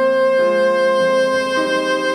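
Classical music: a Steinway grand piano plays changing chords beneath a soloist holding one long, unfading melody note.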